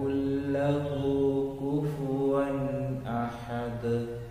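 A man chanting an Arabic supplication (dua) in a melodic voice, drawing each phrase out into long held notes.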